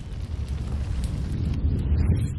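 A low, noisy rumble sound effect for an animated logo, swelling steadily louder.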